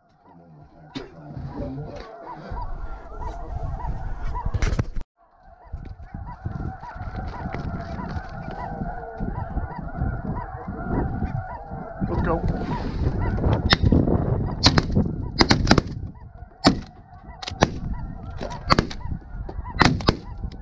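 A large flock of snow geese calling overhead in a steady chorus of honks, with wind on the microphone. The sound drops out briefly about five seconds in. In the last six seconds a string of shotgun shots rings out over the calling.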